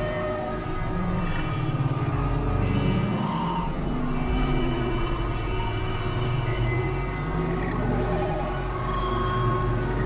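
Experimental electronic drone music: layered synthesizer tones held over a steady low rumble, with a thin high whistling tone above them that drops out briefly a few seconds in and then returns.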